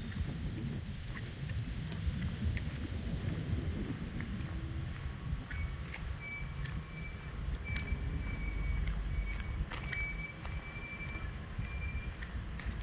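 Uneven low rumble of wind buffeting the microphone outdoors, with a few faint ticks. About halfway through a thin, steady high-pitched tone comes in and holds to the end.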